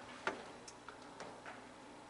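Footsteps: a few light clicks about half a second apart, the first the loudest.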